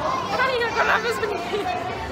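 Indistinct voices chattering, with the steady hum of a busy public space behind them.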